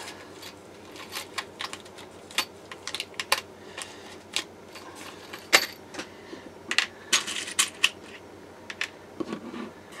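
Small metal pop rivets being handled and dropped onto a desk from their plastic bag: a scattered series of sharp little clicks and light metallic ticks, the loudest about five and a half seconds in.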